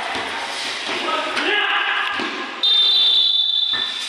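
Referee's whistle blown once: one loud, steady, high-pitched blast a little over a second long, starting suddenly about two and a half seconds in. Before it, voices and the general noise of a basketball game in a hall.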